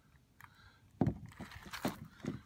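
Hard plastic knocks and scrapes of an RV twist-lock shore-power plug being fumbled against the trailer's power inlet while its pins are lined up. A sharp knock comes about halfway through, followed by a run of smaller knocks and rubbing.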